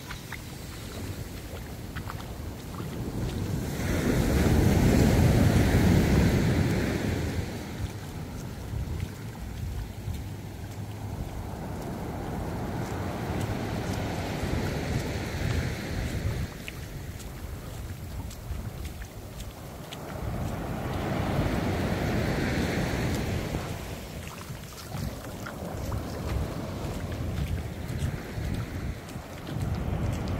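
Surf breaking and washing up a sandy beach, swelling and easing in slow surges about every eight or nine seconds, loudest about four to seven seconds in. Wind buffets the microphone.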